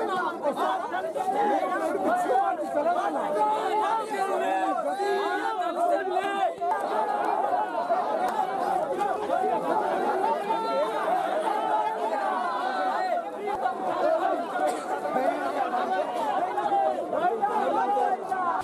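Large crowd of men shouting and talking over one another, a dense, unbroken babble of many voices.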